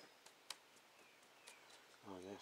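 Near silence: quiet outdoor background, with one faint click about half a second in.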